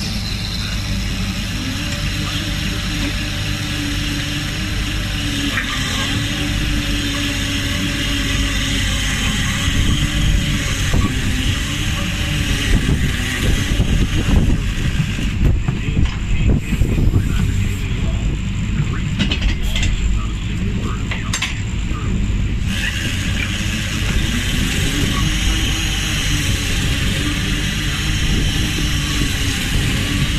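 Lobster boat's engine running steadily, its pitch wavering slightly, under a steady hiss. In the middle stretch irregular knocks and clatter come through over it.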